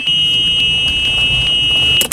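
Golf cart's electronic warning buzzer sounding one steady high-pitched tone, the alarm such carts give while in reverse, over a low rumble; the tone cuts off suddenly at the end.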